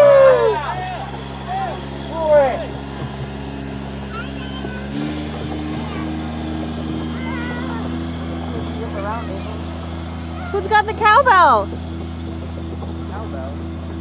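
Compact tractor engine running steadily as it pulls a train of barrel-ride cars. Its pitch steps up about five seconds in as it picks up speed, with short bursts of voices over it.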